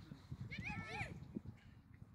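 Children's high-pitched calls and shouts during a football game, strongest from about half a second to one second in, over a low rumble.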